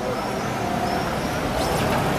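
Street traffic noise: a motor vehicle running close by, a steady rumble.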